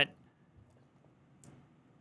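Near silence, room tone only, in a pause in a man's speech, with a faint short click about one and a half seconds in.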